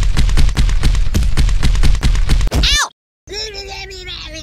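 Added cartoon sound effects. A rapid, heavy rhythmic thumping of about six or seven beats a second, like stomping, is cut off by a short falling squeal near three seconds in. After a brief gap, a long drawn-out animal call like a cow's moo begins.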